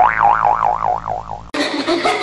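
Cartoon 'boing' sound effect: a warbling tone that wobbles up and down about four times a second and sags as it fades. About one and a half seconds in it gives way to upbeat dance music.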